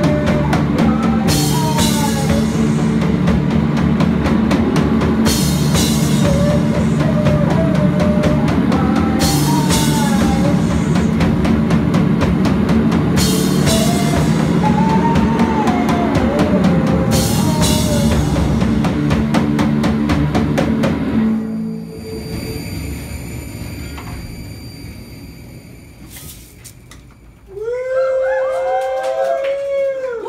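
Live rock band playing: drum kit, electric guitar and keyboard, with a wavering melodic lead line over them. The song stops about 21 seconds in, leaving steady ringing tones that fade away, and voices shout near the end.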